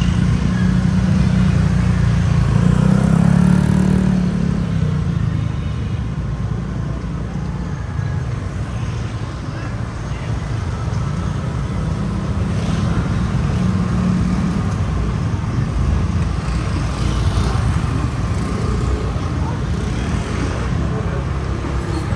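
Busy street traffic: motorbikes and cars running along the road in a steady mix of engine and tyre noise, swelling louder in the first few seconds.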